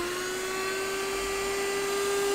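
ionvac Model 7441 cordless handheld vacuum running on its lowest setting: a steady, even-pitched motor whine over a hiss of rushing air.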